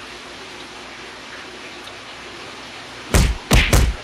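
Three dull thumps in quick succession near the end, loud and heavy in the bass, over quiet room noise.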